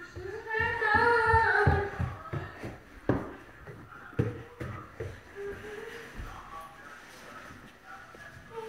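A young voice singing one long wordless note, then a sharp knock about three seconds in, followed by a few short sung notes.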